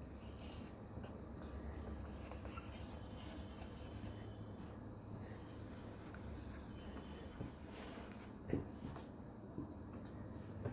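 Faint strokes of a marker pen writing a word on a whiteboard.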